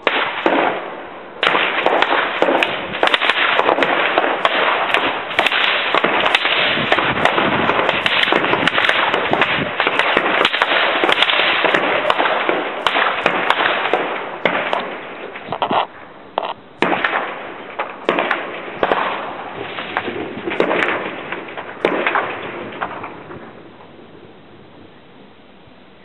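Heavy small-arms fire in a firefight: many weapons, automatic fire among them, crackling in rapid overlapping shots almost without pause. There is a short lull about 16 s in, and the firing thins toward the end.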